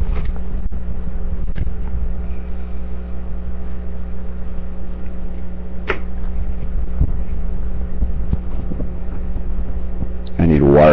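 Steady low electrical hum with hiss, broken by a few scattered clicks and knocks; the clearest click comes about six seconds in.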